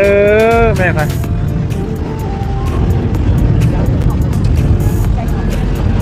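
Steady low rumble of a river tour boat's engine under way. A woman's drawn-out call sits on top of it at the start.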